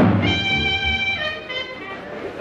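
A 1930s dance band playing swing music on an old film soundtrack. It starts abruptly, with several notes held together at first.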